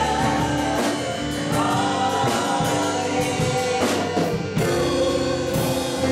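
A mixed group of men's and women's voices singing a gospel song together into microphones, accompanied by a strummed acoustic guitar, with long held notes.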